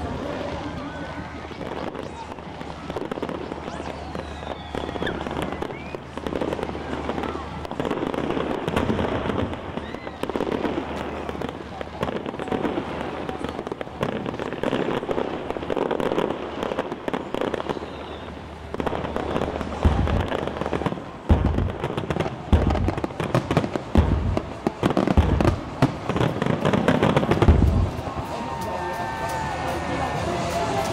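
A firework display: a continuous run of crackling bangs and bursts, with a cluster of about six deep, heavy booms in the last third.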